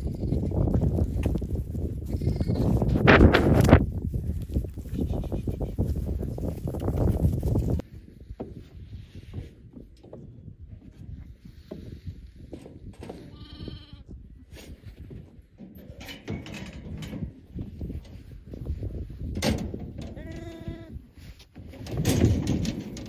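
Sheep bleating several times, clearest about thirteen and twenty seconds in. Before that, a loud rushing noise with a sharp clatter about three seconds in cuts off abruptly about eight seconds in.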